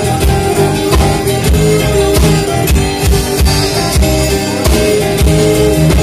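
Live band playing an instrumental passage: electric guitars, bass guitar and a drum kit keeping a steady beat, with a Black Sea kemençe's bowed notes over them.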